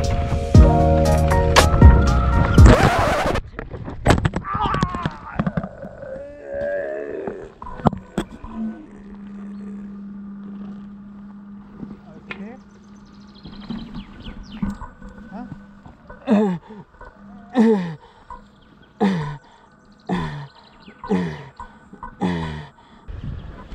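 Background music that cuts off about three and a half seconds in. Then a few scattered knocks, and a winded mountain biker fighting for breath after taking a chest-mounted gimbal in the solar plexus: a run of short groaning gasps, each falling in pitch, about one a second through the last third.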